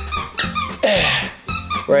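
Background music with a steady beat, over which a dog's squeaky chew toy squeaks in short high-pitched bursts. A man's sigh comes about a second in.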